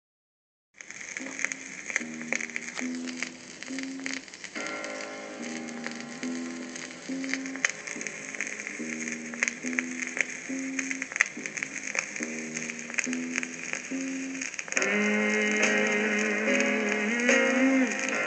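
Instrumental song intro played from a lacquer acetate disc on a turntable, with a repeating figure of low notes over steady crackle and pops of surface noise. More instruments join about four and a half seconds in, and the arrangement swells louder about fifteen seconds in.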